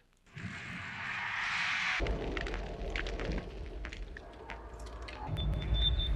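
Action-film soundtrack effects: a hissing noise for about the first two seconds, then a low rumble with scattered clicks and knocks, and a steady high tone that comes in near the end.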